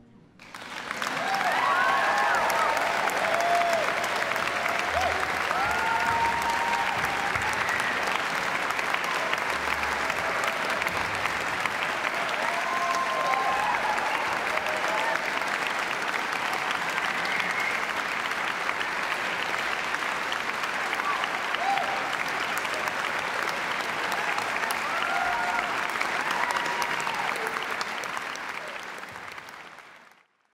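Concert audience applauding steadily, with scattered shouts and cheers rising above the clapping; the applause fades out near the end.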